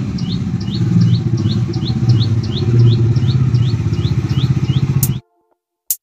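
Bajaj Dominar 400's single-cylinder engine running at low speed as the motorcycle rolls up, with a bird chirping steadily about three times a second above it. The sound cuts off abruptly about five seconds in, followed by one sharp click near the end.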